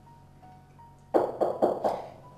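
Four quick, loud knocks on a door about a second in, over soft background music with sparse held notes.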